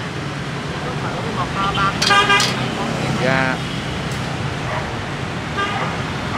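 Steady street traffic noise with a vehicle horn sounding briefly, about two seconds in, and voices nearby.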